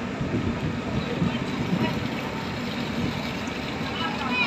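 A passenger ship's engine running with a steady low rumble, with wind noise on deck, as the ship pulls away from the pier. Faint voices are heard in the background.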